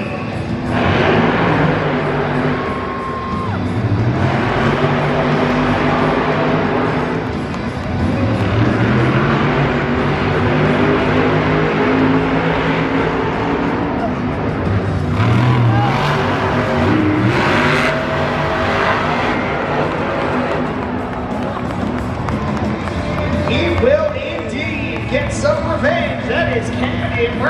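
Monster trucks' supercharged V8 engines revving hard through a side-by-side race, the engine note rising and falling again and again as the drivers work the throttle over the jumps.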